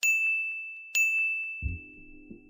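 Two bright bell-like dings about a second apart, each struck sharply on the same high clear note and left ringing to fade slowly: an editing sound effect timed to the text cards appearing. A low pulsing sound comes in near the end.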